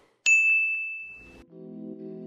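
A single bright chime-like 'ding' sound effect from an on-screen subscribe-button animation, struck about a quarter second in and ringing out over about a second. Background music starts about a second and a half in.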